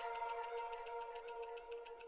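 Tail of a short music sting for a title graphic: a held chord slowly fading under a rapid, even clock-like ticking, a stopwatch sound effect.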